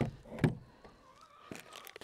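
Two light knocks about half a second apart as a cordless impact driver is set down on a plywood board, followed by a few faint clicks of small bolts and washers being handled.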